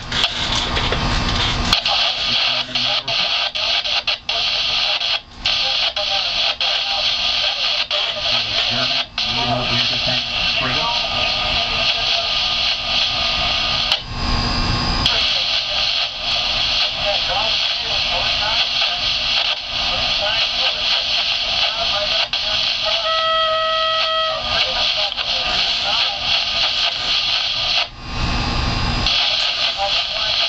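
Garbled marine VHF radio chatter with a steady hiss through the boat's radio speaker, with a one-second electronic beep about three quarters of the way through.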